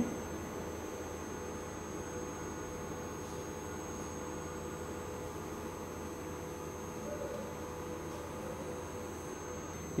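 Steady background hum and hiss with a faint, steady high-pitched whine, and no distinct events.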